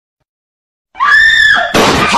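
After a second of silence, a loud high-pitched scream rises and then holds for under a second. It is cut off near the end by a sudden loud burst of noise.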